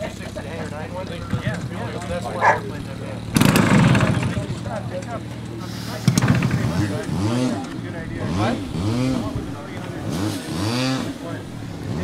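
Indistinct voices talking, with a brief rush of noise a few seconds in and a sharp click about halfway through.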